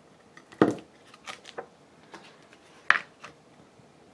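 Small hard objects handled on a glass craft mat: a plastic glue bottle and paper knocking and tapping against the glass. There are a few sharp knocks, the loudest about half a second in and another just before three seconds, with softer taps between.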